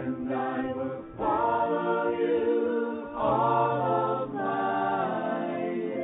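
A choir singing a worship song in held, sustained chords. New phrases enter about a second in and again about three seconds in.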